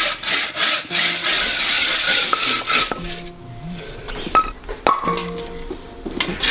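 Bow saw cutting through a bamboo pole in quick, even back-and-forth strokes, which stop about halfway through. Background music follows, with a couple of sharp knocks.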